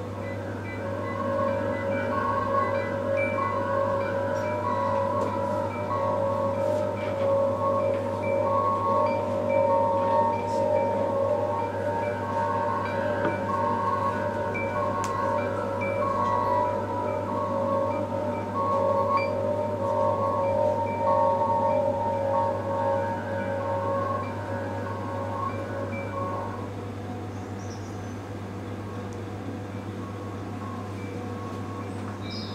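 Ambient electronic performance sound: repeating chime-like tones at a few steady pitches over a continuous low drone. The chimes die away about 26 seconds in, leaving the drone.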